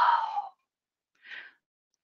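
A woman's breathy exhale, like a sigh, trailing off the end of a word and fading out within half a second. About a second later comes a short, faint breath.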